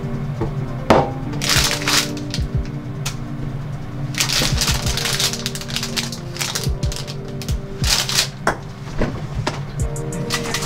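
Background music, with a thin plastic bag crinkling in several bursts as it is handled.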